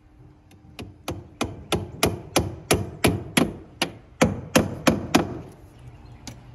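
Hammer driving nails to fasten vinyl soffit J-channel to the wooden eave framing: a steady run of about fourteen blows, roughly three a second, starting about a second in and stopping shortly before the end.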